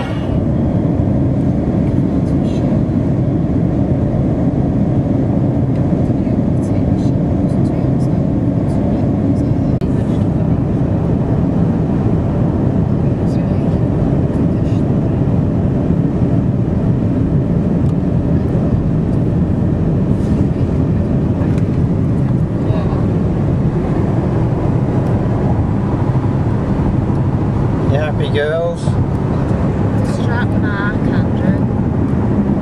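Steady road and engine noise inside a moving car's cabin, loud on the microphone. A voice is heard briefly near the end.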